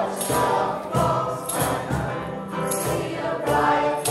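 Mixed group of men and women singing a Christmas carol together, with a shaken percussion beat about every 0.6 seconds.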